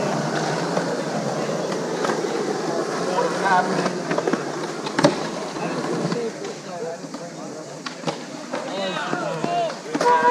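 Skateboard wheels rolling over rough concrete, with scattered board clacks and one loud, sharp clack about five seconds in. Faint talking can be heard in the background.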